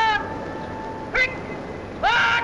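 Drawn-out shouted drill words of command from the Guards on parade: the tail of one long held call at the start, a short sharp rising shout just after a second in, and the rising start of another long call at the very end.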